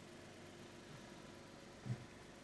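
Faint steady background hum and hiss of a quiet indoor space, with one soft low thump near the end.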